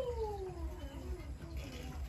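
A cat meowing: one long drawn-out meow that falls in pitch and fades out about a second and a half in.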